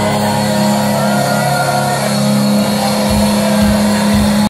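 Heavy metal band playing live, loud: a distorted guitar chord held and ringing, with low drum hits coming in near the end.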